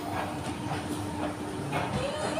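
An inclined moving walkway running, a steady mechanical hum with a light clatter, with faint voices in the background.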